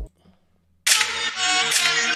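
Near silence, then music starts abruptly just under a second in and carries on loud and full: the opening of the played music video.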